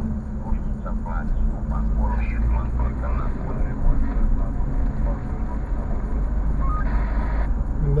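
Steady low engine and road rumble heard from inside a car cabin while driving, with faint, indistinct speech over it in the first few seconds.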